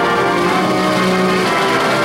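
Concert wind band playing sustained chords, with bells ringing over them.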